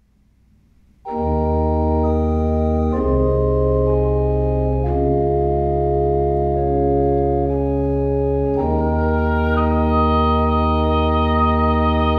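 Pipe organ playing a slow chorale: sustained full chords over a deep pedal bass, starting about a second in and changing chord every couple of seconds. About two-thirds in, a woodwind joins with a higher held melody line over the organ.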